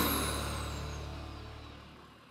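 Nissan GU Patrol's diesel engine idling through a Manta exhaust, with a faint high whine falling in pitch, the whole sound fading out.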